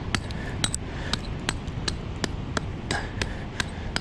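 A steel rock hammer tapping repeatedly on layered sandstone: a steady run of sharp, light strikes, about three a second. The tapping tests the rock's hardness, which turns out harder in some places and softer towards the middle.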